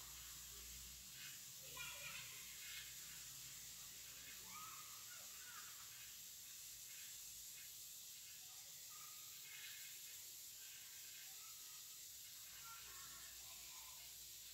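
Near silence: faint steady background hiss and low hum, with a few faint scattered sounds in the background.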